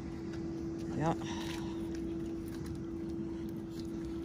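A steady one-note mechanical hum, like a small motor or pump running, over a low background rumble.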